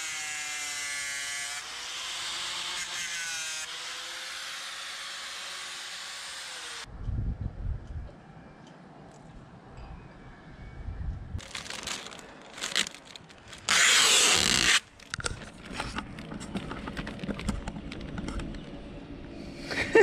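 A handheld power sander running for about seven seconds, its whine shifting in pitch as it is pressed against the hatch edge, then cutting off suddenly. After that, scattered knocks and handling noises, with one brief loud burst of noise about fourteen seconds in.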